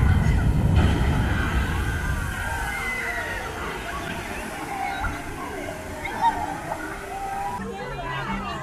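A flume-ride boat plunges down the drop and hits the water, a loud rush of splashing water that is strongest in the first second or two and then eases off. Riders' voices yell and whoop over it, rising and falling in pitch.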